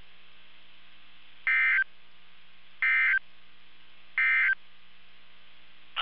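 NOAA Weather Radio EAS/SAME end-of-message data bursts: three short, loud, buzzy digital tone bursts about 1.3 seconds apart, signalling the end of the alert. A faint steady radio hum and hiss runs underneath.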